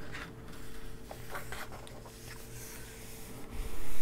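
Thin pages of a colouring book being turned and pressed flat by hand: soft paper rustling and palms rubbing over the paper, with a few faint ticks.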